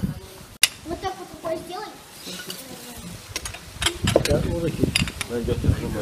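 Indistinct voices of people around a dinner table, with scattered sharp clicks and knocks of tableware. The sound cuts out briefly about half a second in.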